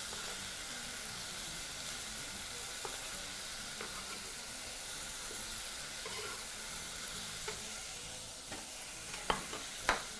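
Steady soft sizzling from a pot of beef and onions frying on a gas hob, with a few faint knife taps on a wooden cutting board as tomatoes are cubed, and two sharper knocks near the end.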